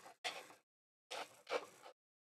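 A few short scraping sounds as 3D-printed plastic dumbbell parts are handled and unscrewed.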